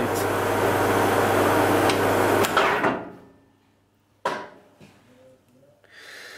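EMCO V13 metal lathe running with its lead screw engaged through the clasp nut. It winds down to a stop about three seconds in, and about a second later there is a single sharp knock.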